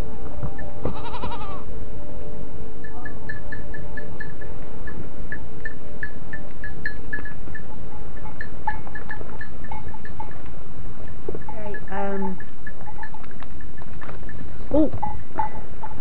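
Goats bleating close by, a few separate calls (about a second in, around two-thirds of the way through and near the end), over a constant heavy rumble. Quiet background music runs underneath in the first half.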